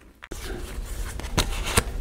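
Printed paper sticker sheets being handled and swapped by hand: a rustle that starts about a third of a second in, with a couple of sharper clicks near the end.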